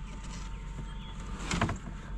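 A gloved hand handling a sheet-metal ATM housing part among cardboard, over a steady low rumble, with one short knock about one and a half seconds in.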